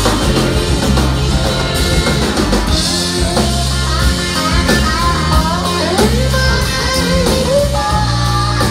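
Country band playing live: acoustic guitar, drum kit, pedal steel guitar and electric guitar, with a lead line of sliding, bending notes over a steady beat.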